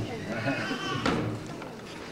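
Audience voices chattering while the drums are paused, with one sharp knock about a second in.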